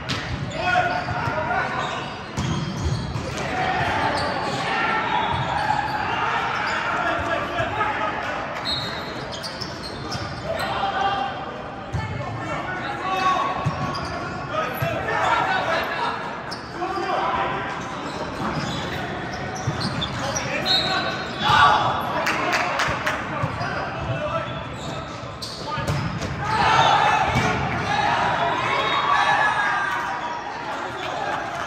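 Volleyball play in an indoor gym: the ball is struck and hits the court in sharp irregular impacts, the loudest about two-thirds of the way through. Players and spectators talk and call out throughout.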